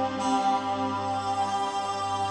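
Live electronic synthesizer music: held, sustained chords of many steady tones, with no drums or beat.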